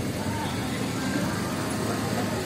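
Indistinct voices of a crowd over a steady low background rumble.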